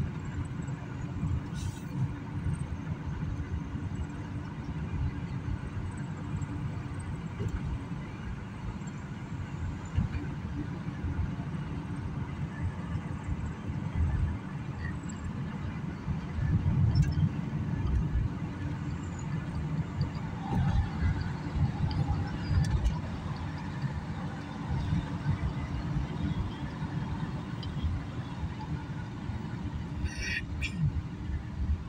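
Road noise inside a moving car's cabin: a steady low rumble of tyres and engine, with a faint hum.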